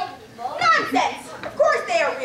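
Children's voices speaking, with no words clear enough to make out.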